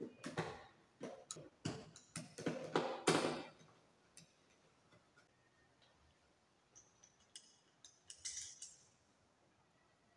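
Small hard plastic clicks and knocks of a lamp holder being handled and fitted onto a round wiring box: a quick run of clicks over the first three seconds or so, then a few scattered ticks and a short scrape near the end.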